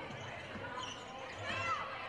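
Basketball arena ambience during live play: a low crowd murmur with faint voices calling out, and the ball bouncing on the hardwood court.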